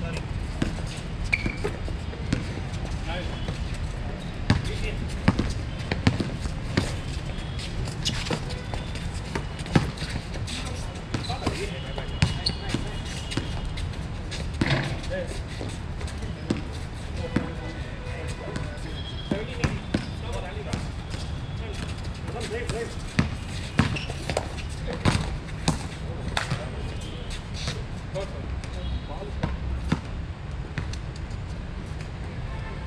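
A basketball bouncing on an outdoor hard court during play: irregular sharp thuds of dribbles and shots scattered throughout, over a steady low rumble and indistinct players' voices.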